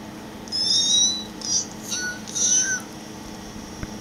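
A run of four short, high-pitched squeaks within about two seconds, the first the longest.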